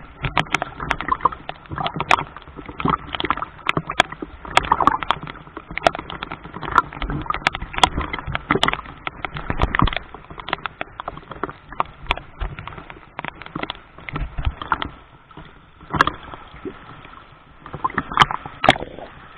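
Seawater sloshing and splashing right at the camera, with many irregular sharp clicks and knocks, busiest in the first half and thinning out in the last few seconds.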